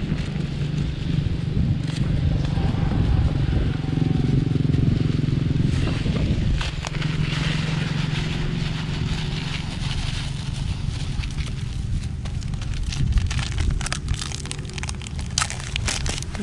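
A plastic seasoning packet crinkling and crackling in the hands as it is opened and its granules are shaken into a plastic basin, with a low steady motor hum in the background for about the first ten seconds.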